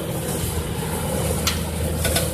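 Tractor engine running steadily with a low, even hum, and one short click about one and a half seconds in.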